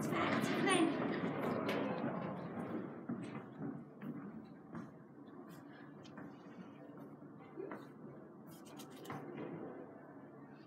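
Indistinct voices that fade over the first few seconds into a low murmur, with scattered faint clicks and rustles.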